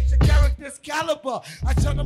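Live hip hop: rap vocals over a beat with heavy bass. The beat drops out for about a second in the middle while the rapping continues, then comes back in.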